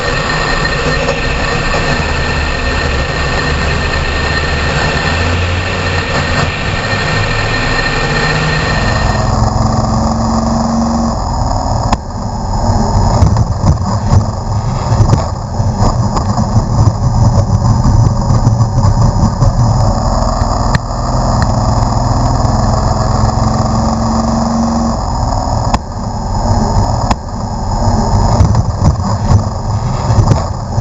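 SK Modified race car engines heard loud and close from an in-car camera mic. The sound changes character about nine seconds in, and from about twelve seconds on it turns rougher, broken by many short knocks and jolts.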